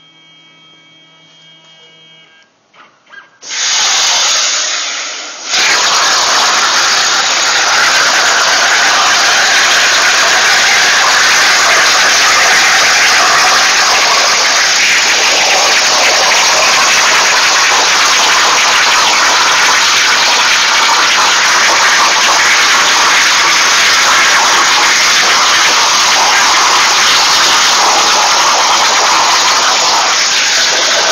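CNC plasma table's torch cutting a metal sheet. After a few quiet seconds a loud hiss starts about three and a half seconds in and drops out briefly. About five and a half seconds in the plasma arc settles into a loud, steady hiss that carries on as the cut proceeds.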